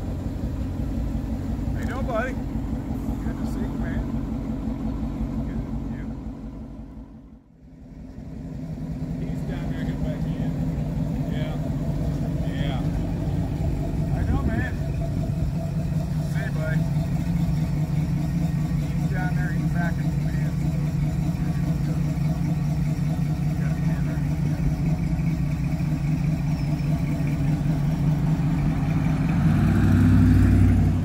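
A car engine idling steadily. About seven seconds in the sound drops away almost to nothing for a moment, then an idling engine comes back with a slightly different pitch.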